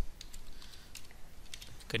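Computer keyboard keys clicking as a word is typed, a string of separate keystrokes at an irregular pace.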